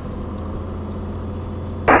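Steady low drone of a Cessna 182 Skylane's piston engine and propeller, heard inside the cabin on final approach.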